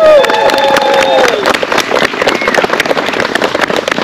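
A small crowd clapping and cheering, with long whoops at the start that trail off after about a second and a half, then steady clapping.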